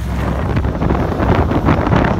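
Wind rushing over the microphone on a racing speedboat running at speed, with the boat's engine and water noise underneath.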